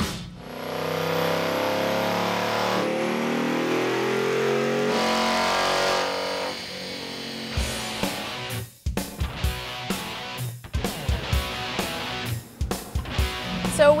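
Ford Mustang GT's 5.0 L V8 at full throttle on a chassis dyno, its pitch rising steadily for about five seconds before it drops away, with background rock music and electric guitar throughout. This is the stock, untuned baseline pull.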